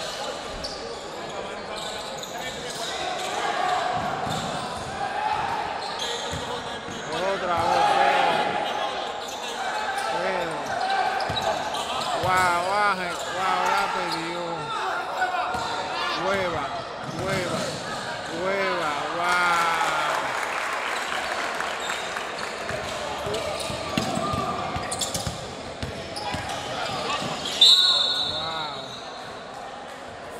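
A basketball game in a large, echoing gym: the ball bounces and dribbles on the court while players and spectators call out. Near the end a referee's whistle gives one short blast, the loudest sound here.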